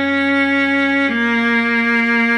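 Viola melody played slowly: two sustained bowed notes, each held about a second and a half, stepping down in pitch about a second in, over a low held backing note.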